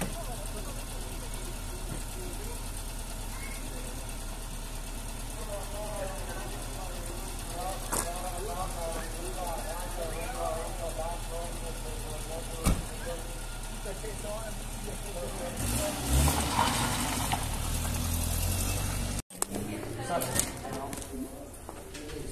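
Peugeot sedan's engine idling steadily with a low hum, a car door shutting with a single thud about halfway through, then the engine revving louder for a few seconds before the sound cuts off abruptly.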